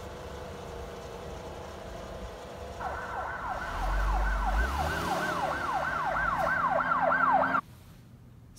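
Emergency-vehicle siren in a fast yelp, quick rising sweeps about three a second, coming in about three seconds in and cutting off abruptly near the end. Before it, a low steady hum.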